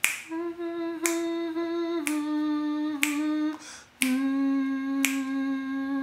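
Finger snaps keeping a slow, even beat, about one a second. Under them run three long, steady held notes, each a little lower than the last.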